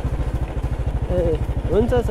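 Motorcycle engine running at a steady cruise while the bike is ridden, with an even low pulse throughout.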